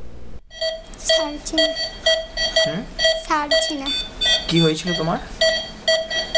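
An electronic alarm beeping evenly, about twice a second, each beep a short chord of several steady pitches, beginning just after a brief drop-out near the start. Faint voices are heard underneath.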